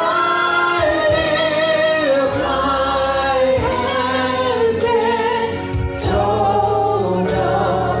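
A gospel song sung by a man and a woman into handheld microphones, amplified in the hall, with long held notes sung with vibrato.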